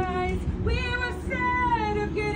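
Mixed men's and women's voices singing a cappella in close harmony. Several held notes sound together, with a low bass voice underneath, and the chord shifts every half second or so.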